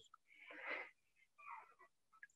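A man breathing in faintly between phrases, with a short, fainter second breath about a second and a half in.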